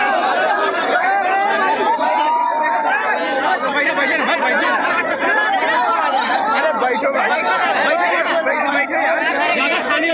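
A packed crowd of young men, many voices talking and calling out over one another at close range, a loud, unbroken jumble of chatter.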